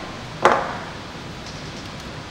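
Wire cutters snipping through a tinned stranded wire: a single sharp snip about half a second in.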